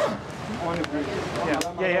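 Men's voices talking, partly indistinct, with a spoken "yeah" near the end.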